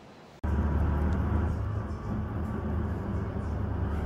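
Steady low rumble of a moving bus, its engine and road noise heard from inside the cabin, cutting in abruptly about half a second in after a faint outdoor hiss.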